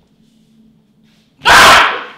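A person's sudden, very loud jump-scare shout, about half a second long, bursting out about one and a half seconds in after near-quiet room tone.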